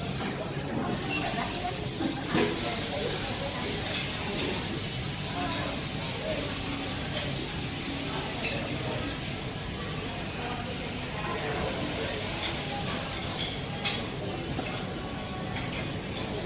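Indistinct background voices of people talking over a steady hiss, with two sharp clinks, one a couple of seconds in and one near the end.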